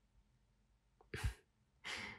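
A woman breathing close to the microphone: a short, sharp breath with a low thump about a second in, then a softer breath near the end.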